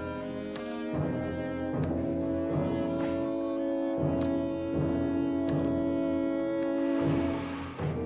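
Tense orchestral underscore: sustained strings and brass over a steady low beat that strikes about every three-quarters of a second.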